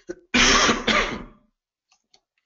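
Someone clearing their throat: two loud bursts in quick succession, over by about a second and a half in.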